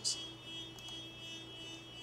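Faint steady electrical hum with a thin high-pitched whine underneath, the recording's background noise during a pause, with a brief soft click right at the start.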